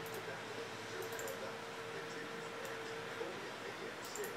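A few faint, sharp computer mouse clicks, a small cluster of them about a second in, over a steady low hum and hiss of room tone.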